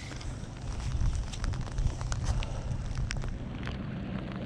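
Wind rumbling and buffeting on a camera microphone in wet weather, with scattered light ticks and handling rustle while a fish is played on a feeder rod and spinning reel.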